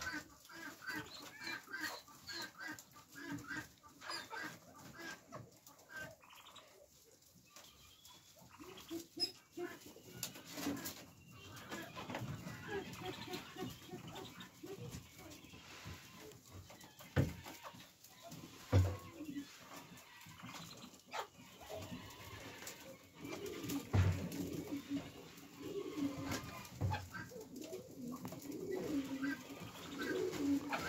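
Mandarin ducks giving soft, short repeated calls on and off, with a few sharp knocks in the second half.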